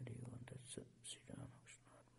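Faint, soft voices, largely whispered, with sharp hissing 's' and 'sh' sounds, fading toward the end over a low steady hum.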